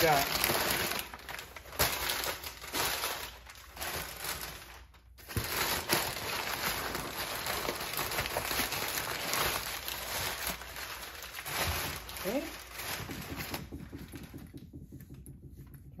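Tissue paper and crumpled kraft packing paper crinkling and rustling as it is pulled out of a cardboard box. There is a brief break about five seconds in, and the rustling dies down over the last couple of seconds.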